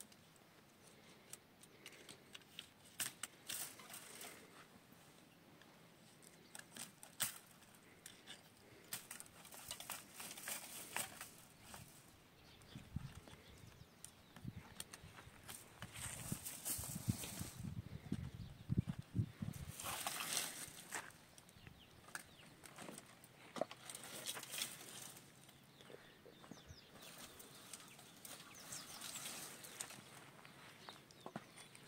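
Wire-mesh fencing and dry brush being handled by hand: scattered sharp clicks with bouts of rustling and scraping, louder in stretches after the middle.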